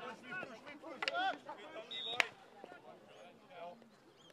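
Players shouting across a shinty pitch during a tackle. Just after two seconds in there is one sharp wooden crack from a shinty stick (caman) striking.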